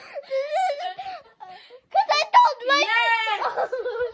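A girl laughing hard in high-pitched, wavering squeals, in two bouts, the second longer.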